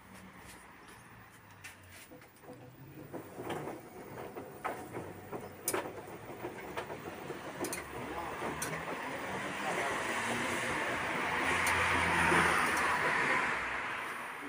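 A car passing on the street below: tyre and engine noise swells over several seconds and fades near the end, with a few scattered light clicks before it.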